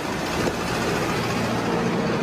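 Steady noise of passing road traffic, with no clear speech over it.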